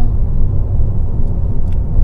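Steady low rumble of engine and road noise inside the cabin of a moving Abarth 695 Tributo 131 Rally, driven by its 1.4-litre turbocharged four-cylinder.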